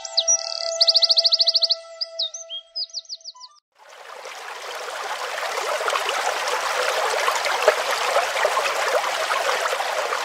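Bird chirps and quick trills over a few steady held tones for about three and a half seconds. This cuts off suddenly. From about four seconds in there is the steady rush of a shallow river running fast over rocks.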